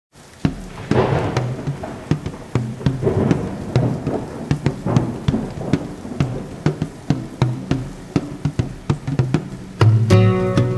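Heavy rain falling, with many sharp irregular drops splashing and low thunder rumbling.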